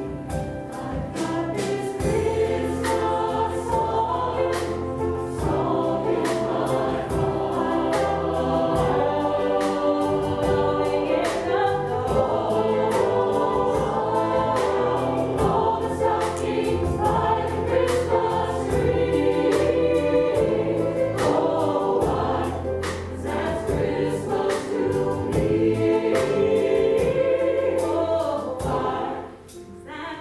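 Mixed choir of men and women singing sustained chords together. The singing drops away briefly near the end as a phrase closes.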